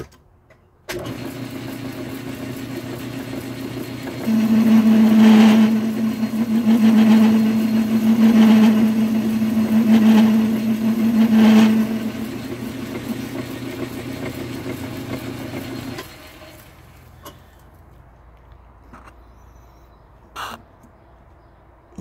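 Metal lathe starting up and turning a four-jaw chuck. From about four seconds in, a tool cutting the spinning metal part makes it much louder, with a strong steady tone and a scrape recurring every second or two. The cut ends near twelve seconds, and the lathe is switched off at about sixteen seconds and winds down.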